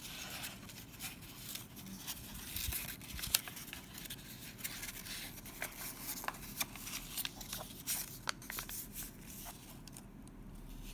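A sheet of origami paper being folded and creased by hand: irregular crinkling and rustling, with many sharp little crackles as the paper is bent and pressed flat.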